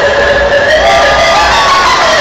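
Loud hardcore (gabber) dance music over a large PA, with the crowd cheering. It is continuous, with held synth tones and a few sliding notes in the second half.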